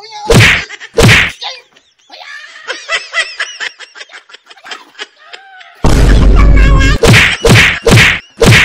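Kung-fu-film style punch and hit sound effects: two sharp whacks in the first second and a half, a quieter high wavering sound in the middle, then a long loud noise about six seconds in followed by a quick run of whacks near the end.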